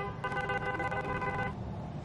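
A steady, horn-like electronic tone made of several pitches at once. It dips briefly at the start, then holds for over a second and stops about one and a half seconds in.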